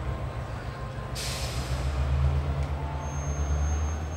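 Low, steady rumble of an idling train locomotive, with a short hiss of released air about a second in and a thin high tone near the end.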